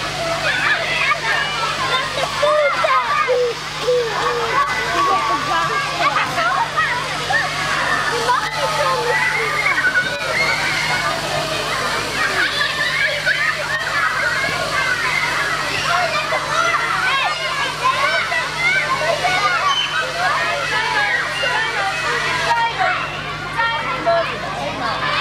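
Many young children shouting and shrieking at play over running, splashing water. A steady low hum runs underneath.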